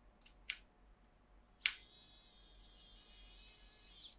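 ARROWMAX electric screwdriver driving an M4 screw into a tapped 3D-printed pegboard backer. Two faint clicks come about half a second in. From about a second and a half in, the motor runs with a steady high whine for a little over two seconds.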